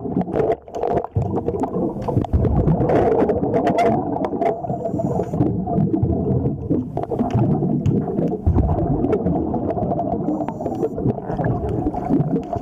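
Underwater sound picked up through a diving camera's waterproof housing: a dense, muffled rumble with frequent sharp clicks and knocks.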